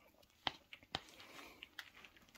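A few faint, light taps, about three sharper ones with smaller ticks between them: a vitamin-dusted feeder cockroach being tapped against a cup to knock off the excess powder.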